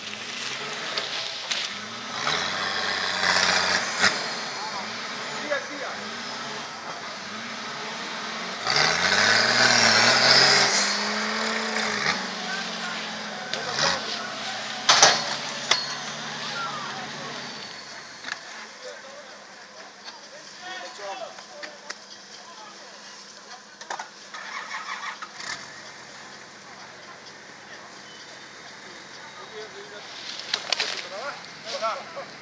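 An off-road 4x4's engine revving hard in repeated bursts, its pitch rising and falling as it works its way up a steep, leaf-covered slope. It is loudest about nine to twelve seconds in, with a sharp knock a few seconds later. The engine sound drops to a lower level after about eighteen seconds.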